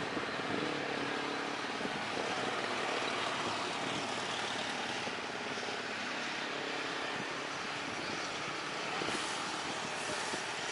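Jet engines of a Boeing 737-type twin-turbofan airliner running as it rolls slowly along the runway: a steady, even rushing noise.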